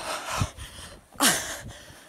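A boy's breathless gasps, two breathy bursts about a second apart, the second louder with a short falling voiced tail, close to the microphone, with a low thud early on.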